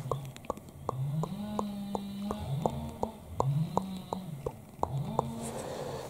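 Background noise: sharp clicks at an even pace of about three a second, under a low hum that keeps rising, holding and dropping back every second or so.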